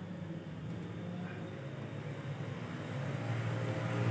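Faint low background rumble, growing a little louder toward the end.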